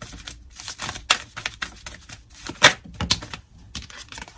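A deck of cards being shuffled by hand: an irregular run of quick flicks and snaps of card edges, the loudest snap a little after two and a half seconds.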